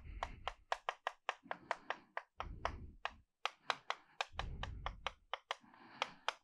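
Chalk writing on a blackboard: a quick, irregular run of sharp taps and short scrapes, several a second, as characters are written stroke by stroke.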